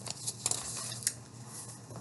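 Pages of a paperback book being flipped by hand: a few quick, soft papery rustles in the first half second and another flick about a second in.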